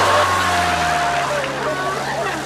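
Single-engine light aircraft in flight: a steady engine and propeller drone with rushing air noise.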